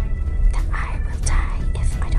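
Soft, whispery speech over background music, with a steady low rumble of a car cabin underneath.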